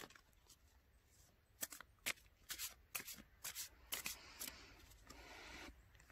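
A deck of oracle cards being shuffled by hand to draw a card: a run of faint taps and flicks about twice a second, then a longer soft rustle near the end.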